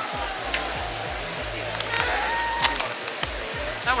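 Steady rushing background noise with faint music, a few small clicks, and a woman's voice starting a word right at the end.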